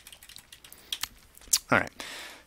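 A few scattered computer keyboard keystrokes, sharp separate clicks as a cell label is typed and entered in a spreadsheet.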